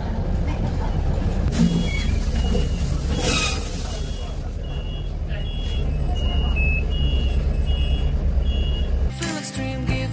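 Inside a city bus: steady low engine rumble, a short burst of compressed-air hiss about three seconds in, then a repeating two-tone electronic beep about twice a second while the front door is open at a stop. Music cuts in near the end.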